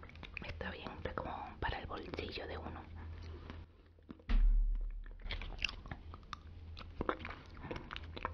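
Close-miked wet mouth sounds of yogurt being licked off a foil yogurt-cup lid: small lip smacks, tongue clicks and sticky noises, with the thin foil crinkling in the hands. A sudden low thud about four seconds in, after a brief lull.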